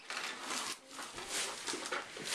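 Wrapping paper and gift packaging rustling and crinkling in several short spells as presents are unwrapped.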